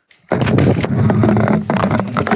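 Loud crackling and rumbling microphone handling noise that starts suddenly about a third of a second in and keeps going: the speaker's microphone is being knocked or rubbed, a fault that has him testing it soon after.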